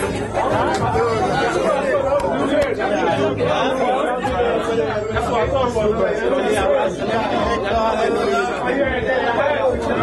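Many people talking at once in a crowd: steady overlapping chatter, with no single voice standing out.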